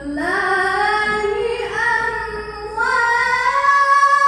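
A boy reciting the Quran in melodic tilawah style into a microphone, holding long notes whose pitch climbs in steps, about two seconds apart.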